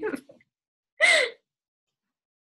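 A woman's short laugh, one brief burst about a second in, after a trailing bit of voice at the very start.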